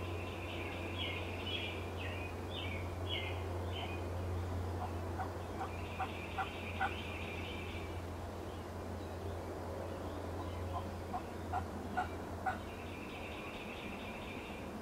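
Wild turkeys calling from a flock: rapid rattling, gobble-like calls come three times, and runs of short sharp notes come about midway and again near the end. A low steady hum underlies the calls and fades out toward the end.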